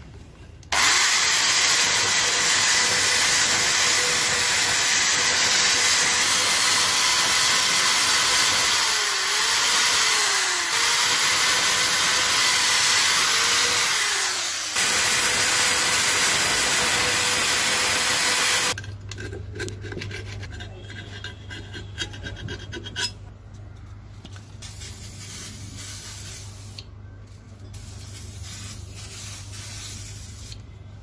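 Electric drill spinning a wire brush against a cylinder head's combustion chamber, scrubbing out carbon deposits. It starts about a second in and runs steadily with a motor whine, bogging down briefly twice under load, then stops suddenly a little past halfway. Quieter rubbing and handling noises follow over a low hum.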